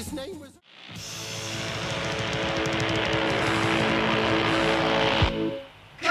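A sung vocal record cuts off in the first half second, and after a brief gap a motorcycle engine sound effect revs and swells steadily louder for about four seconds before dropping away, the motorbike intro that opens a 1970s glam rock record.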